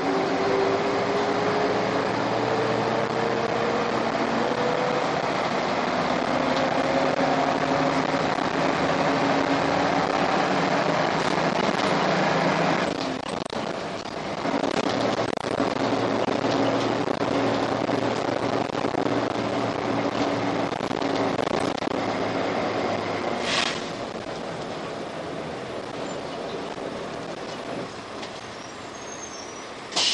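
Karosa B732 city bus's diesel engine heard from inside the passenger cabin, pulling hard uphill: the engine note climbs steadily for about thirteen seconds, dips briefly at a gear change, then pulls on again. A sharp click comes about three quarters of the way through, after which the engine is quieter.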